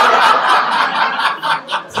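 An audience laughing together, fading out about a second and a half in.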